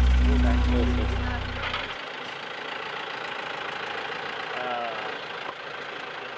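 Background music fading out over the first two seconds, giving way to the steady running of a safari vehicle's engine, with faint voices.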